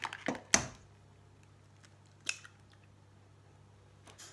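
An egg tapped on the rim of a stainless steel mixing bowl and cracked open: a few sharp cracks in the first second, the loudest about half a second in, and one more crack about two seconds later.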